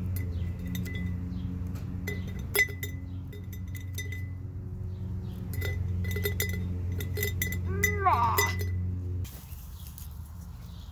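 Scissors snipping green willow twigs, the cut pieces dropping and clinking against a glass mason jar in a run of sharp clicks and short rings, the loudest clink about two and a half seconds in. A steady low hum underlies it and stops just before the end.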